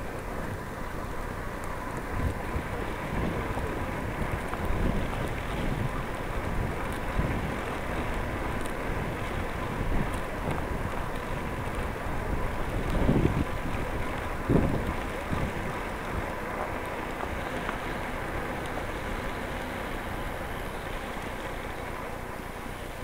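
Wind buffeting the microphone of a camera on a moving bicycle, a steady rushing noise with low gusts. The two strongest gusts come a little past the middle.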